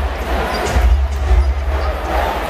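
Loud music with heavy bass playing over the murmur of a basketball arena crowd.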